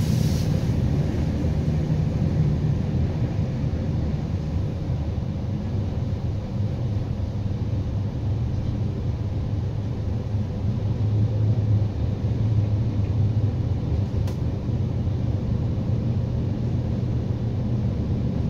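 Steady low rumble of a regional passenger train running at speed, heard from inside the carriage, with a single faint click about fourteen seconds in.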